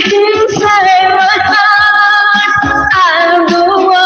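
A woman singing over backing music, holding long, drawn-out notes.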